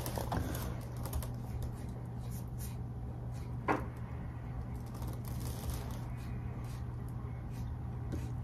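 Quiet room with a steady low hum and faint small clicks of lips and mouth as a song is mouthed silently, with one short, slightly louder click a little before the middle.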